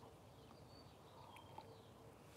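Near silence: faint outdoor ambience with a few brief, faint bird chirps.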